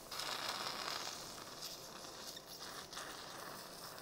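Faint operating-room background: a soft steady hiss with a few light clicks.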